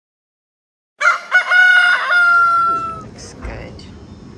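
A rooster crowing once, cock-a-doodle-doo: a few short broken notes about a second in, then one long held note that falls slightly in pitch and stops about three seconds in.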